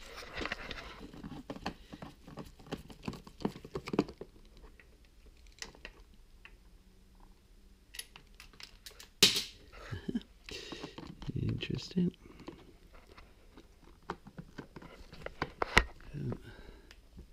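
Hand tools at work on the motorcycle's air intake: scattered clicks and taps of a screwdriver on the tube bolts, with rustling as the plastic and rubber parts are handled, and one louder knock about nine seconds in.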